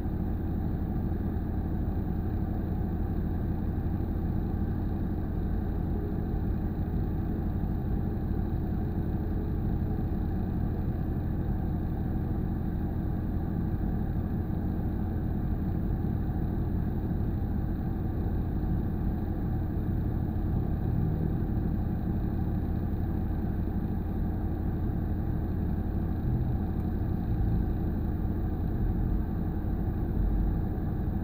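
Car engine idling steadily, heard from inside the cabin.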